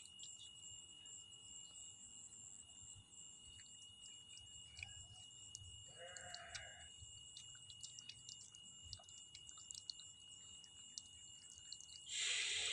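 Near silence: a faint steady high whine and hiss of a night-time background, with small scattered ticks and one short faint call about six seconds in.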